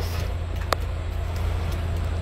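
Steady low hum of an idling vehicle engine, most likely the truck's diesel, with a sharp click about two-thirds of a second in and a fainter one near the end.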